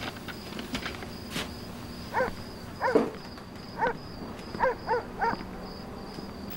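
Crickets chirping steadily in the background as a faint, pulsing high trill. Six short squeaks that rise and fall in pitch stand out between about two and five seconds in.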